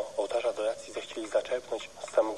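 A person speaking continuously, with a thin, narrow-band sound like speech heard over a radio broadcast or phone line.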